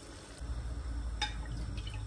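Meat stock poured into a pan of boiling potatoes in tomato sauce: a splashing pour starts about half a second in and lasts over a second, with a single light click partway through.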